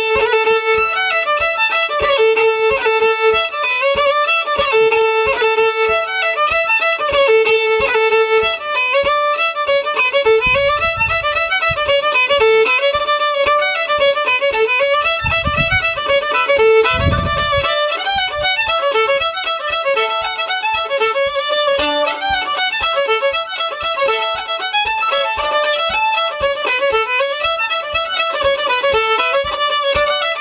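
Solo fiddle playing a Donegal dance tune in traditional Irish style. It opens with a few long held notes, then moves into quick ornamented running phrases. A few low thumps sound in the middle.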